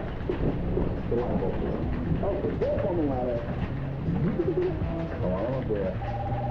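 Muffled audio from an old television playing a commercial: pitched, sliding voice-like sounds over a steady hiss of rain.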